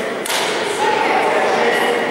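A badminton racket strikes a shuttlecock once, a sharp hit about a quarter second in with a short echo in the sports hall. Voices talk in the background.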